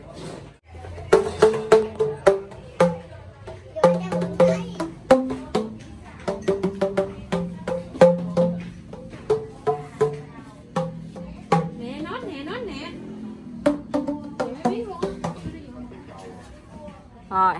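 Bamboo tube instrument struck on the open ends of its tubes with flat paddles: a quick, irregular run of hollow, pitched pops that step between several notes.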